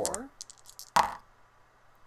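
Dice thrown onto a cardboard game board, with a few light ticks and then one sharp clack about a second in as they land.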